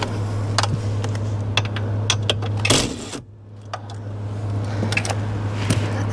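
Scattered clicks and metal taps of hand tools working loose the steering column fasteners, with one louder clatter a little under three seconds in, over a steady low hum.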